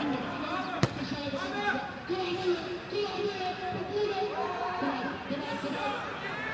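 Men's voices calling and shouting on a football pitch during play, with one sharp thud of a football being kicked about a second in.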